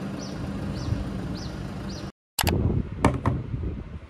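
A steady low hum with a faint high chirp repeating about twice a second, which breaks off abruptly just after two seconds. After it come a few sharp knocks.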